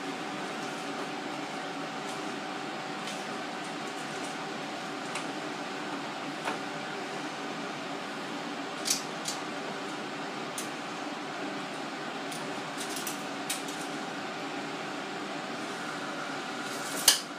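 Steady mechanical hum in a small room, with a few light clicks and taps scattered through it from floor-tiling work with a tape measure.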